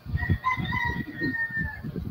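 A rooster crowing: one long call held at a nearly steady pitch for most of two seconds.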